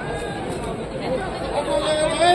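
Spectators chattering in overlapping voices, with no clear words standing out.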